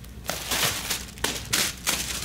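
Clear plastic packing bags crinkling and rustling as they are pulled from a cardboard box and handled, in several loud bursts.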